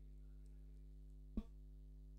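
Near silence: a faint steady hum, broken by one brief short sound about one and a half seconds in.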